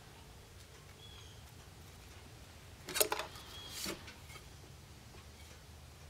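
Quiet room tone broken by a short clatter about three seconds in and a smaller one just before four seconds, from a thin stainless steel square being handled on a wooden workbench.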